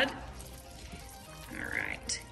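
Soft sounds of thick macaroni and cheese being stirred with a silicone spatula in a slow-cooker crock, under faint background music, with a brief louder sound near the end.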